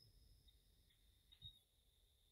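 Near silence: a pause on a video call.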